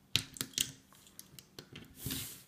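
A metal crochet hook clicking and tapping against a plastic Rainbow Loom's pegs and rubber bands as bands are worked off the loom. There are a few sharp clicks, the loudest just after the start, and fainter ones through the rest.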